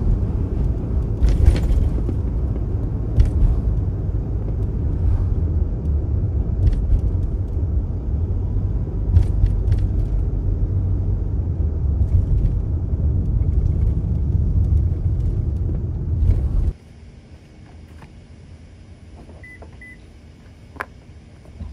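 Steady low road and engine rumble inside the cabin of a moving Toyota HiAce van, with a few light clicks. It cuts off suddenly about three seconds before the end, leaving a much quieter background.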